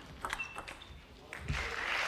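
Table tennis ball clicking off bats and table in quick strokes as a rally plays out, then arena crowd applause rising about a second and a half in as the point ends.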